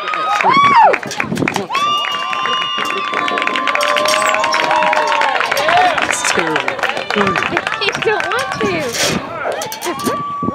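Softball spectators cheering and yelling, with hand-clapping, as a run scores. Several voices hold long shouts from about two seconds in, over a steady patter of claps.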